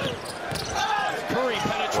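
Basketball bouncing on a hardwood court in a game broadcast, with a commentator's voice over it.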